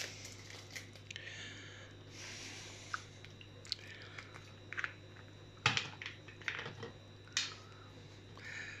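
Scattered light clicks, taps and short rustles of kitchen handling, a spice packet and a plastic lemon-juice bottle being picked up and its screw cap taken off. A sharper knock comes a little before six seconds, over a low steady hum.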